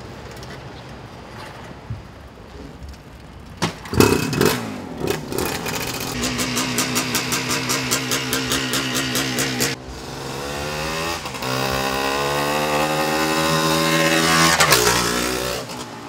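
1977 OSSA Super Pioneer 350's single-cylinder two-stroke engine being ridden. It revs sharply about four seconds in, then pulls with its pitch climbing, breaks off once midway, and is loudest just before the end. It runs without its air filter or carb boot, which the owner says keeps it from running perfectly.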